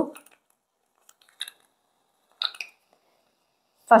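Brief, quiet handling sounds of a portable capsule coffee maker's plastic parts as the capsule holder is fitted into the body: a small click about a second and a half in, then a short scrape about a second later.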